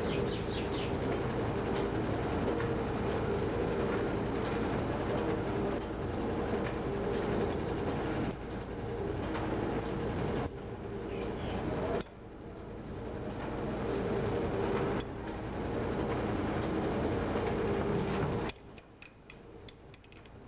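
Wire nail making machine running: a steady mechanical clatter over a hum. The level drops abruptly a few times, most sharply near the end.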